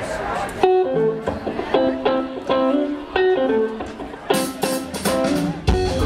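An unaccompanied electric guitar riff of short plucked notes opens a straight-ahead funk tune, starting just under a second in. About four seconds in, a drum kit with cymbals comes in with it.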